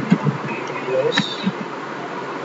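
Steady buzzing hiss from a noisy microphone, with a few soft keyboard taps and one sharper click about a second in.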